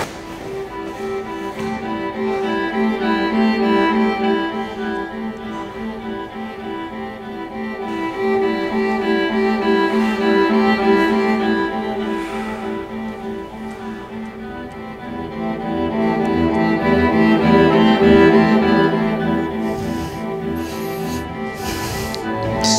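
Background music of sustained, bowed-string-like notes, swelling and easing several times.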